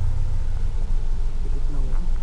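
Steady low rumble of a car moving slowly through city traffic, heard from inside the cabin.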